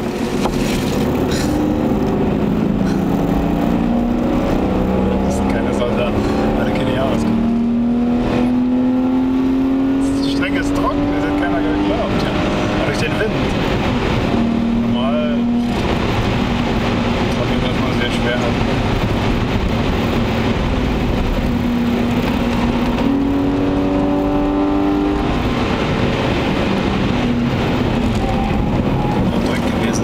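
The BMW 525i E34's 2.5-litre M50B25TU inline-six engine, heard from inside the cabin, pulling hard on track. Its pitch climbs for several seconds and then drops back, again and again as the car accelerates and eases or shifts. Steady road and tyre noise runs underneath.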